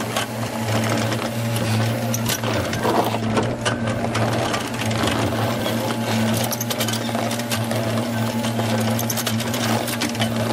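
Diesel engine of a Case compact track loader running steadily while its backhoe attachment digs a footing trench, with scattered clicks and knocks as the bucket works the soil.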